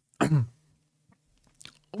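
A man clearing his throat once, briefly, about a quarter second in, the sound falling in pitch. A few faint clicks follow near the end.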